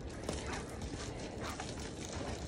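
Faint rustle and soft patter of a wet long-haired dog moving about on concrete, water flying off its coat, with a few light ticks over low background noise.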